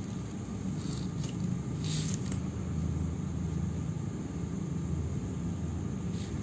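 A steady low rumble, with a few faint brief hisses about one and two seconds in.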